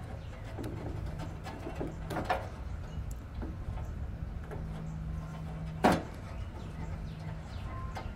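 Hands handling a gas grill's push-button spark igniter module and its wire leads, with a few small knocks and one sharp click about six seconds in as a push-on connector seats onto a terminal. A low steady hum comes and goes underneath.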